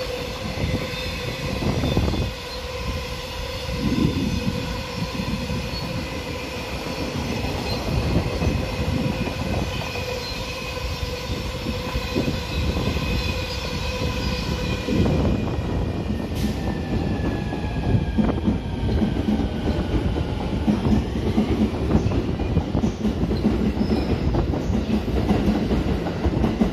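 Container wagons of a long freight train rolling past at speed, the wheels clattering over the rail joints in a continuous rumble. A steady ringing tone sounds over the first half.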